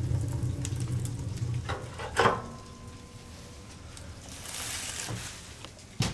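Wood fire burning in the firebox of a small solid-fuel boiler: a low rumble for the first two seconds, a sharp knock about two seconds in, then a soft hiss.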